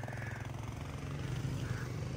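A small motorbike's engine running steadily as it approaches along the street, growing slightly louder toward the end.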